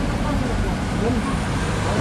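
Steady low rumble of road traffic and vehicle engines, with faint voices murmuring underneath.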